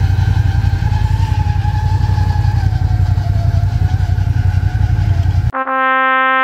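Snowmobile engine running steadily under way, heard from the rider's seat: a deep rumble with a whine that drifts slightly up and down in pitch. Near the end it cuts off abruptly and a steady horn-like tone begins.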